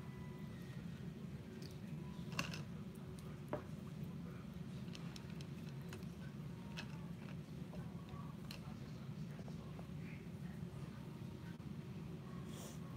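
Steady low room hum with scattered small clicks and taps of paintbrushes and painting supplies being handled at a table, the two sharpest clicks about two and a half and three and a half seconds in.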